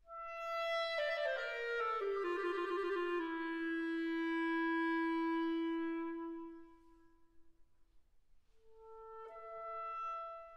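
Solo clarinet playing a slow, free-time passage: a held note, then a quick run tumbling down to a long low note that fades away. After a short pause, a new phrase begins near the end, stepping upward.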